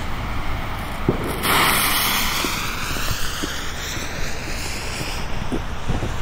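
Firework battery's fuse catching about a second and a half in and burning with a steady hiss.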